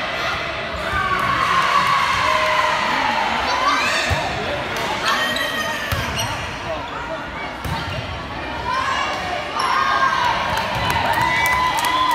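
Volleyball rally in a gymnasium: several sharp hits of the ball, a second or two apart, amid players and spectators calling out, echoing in the hall.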